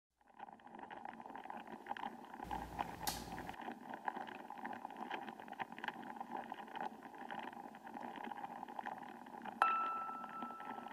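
Faint room ambience with scattered small clicks and a brief low rumble about three seconds in. Near the end a single bell-like chime note is struck and rings on.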